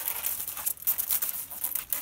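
Old, dead bramble canes rustling and crackling as they are pulled away from a stone wall and dragged through grass, in uneven crackles.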